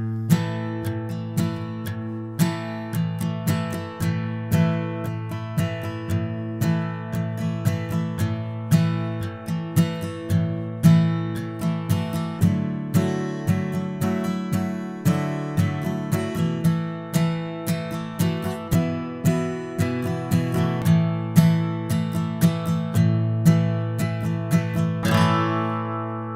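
Martin HD-28 acoustic guitar strummed in a steady rhythm, about two strums a second, with chords ringing between strokes; it starts suddenly right at the beginning.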